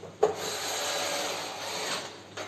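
Cordless drill-driver running on a screw in a washing machine's sheet-metal body for nearly two seconds. It starts with a sharp knock and stops abruptly near the end.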